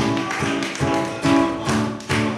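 Acoustic guitar strummed live in a steady rhythm, each chord struck with a sharp percussive attack, a little over two strokes a second.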